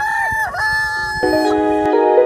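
A rooster crowing: two long, drawn-out crows, the second ending about a second and a half in. Soft sustained music comes in under the end of the second crow.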